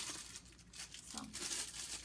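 Packaging being handled by hand, crinkling and rustling irregularly.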